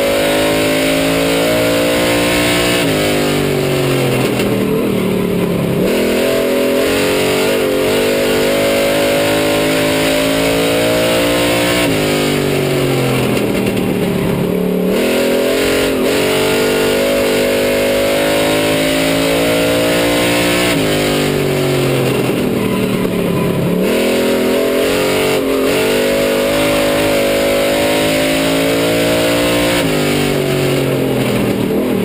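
Street stock race car's engine heard from inside the car at racing speed. Its pitch holds high, then drops and climbs back as the car eases off for each turn and accelerates out, in a cycle of about nine seconds that comes three times.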